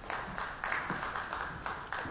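Audience applauding, many hands clapping.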